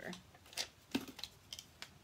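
A new sticky note peeled off its pad and handled: a few short paper crackles and light taps, the sharpest about half a second and a second in.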